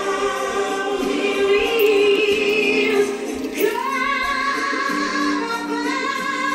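A choir singing a gospel song in harmony, long held notes that shift pitch every second or two.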